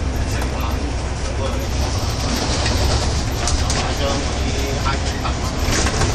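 Double-decker bus heard from the upper deck while driving: a steady low rumble of engine and road noise, with scattered rattles and clicks from the bodywork, a cluster of them about halfway through.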